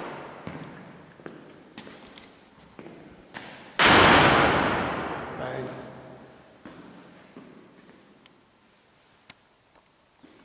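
A heavy door slams shut about four seconds in: one loud thud that rings on and dies away slowly over several seconds in the stone chapel's echo. A few light clicks come before it.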